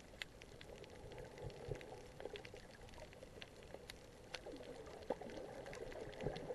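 Faint underwater sound heard through a submerged camera: a steady, muffled watery rush with many scattered sharp clicks and crackles.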